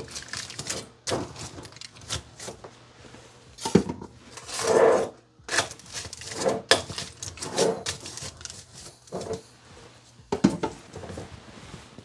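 Aluminium foil crinkling as it is wrapped over glass mason jars of rice, with irregular knocks and clunks as the jars are handled and set into the Instant Pot's metal inner pot; the crinkling is loudest about five seconds in.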